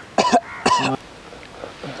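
A man coughing twice, about half a second apart, harsh coughs on hookah smoke.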